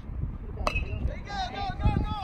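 A metal baseball bat hits a pitched ball about two-thirds of a second in: one sharp, ringing ping. Young players' voices start shouting right after.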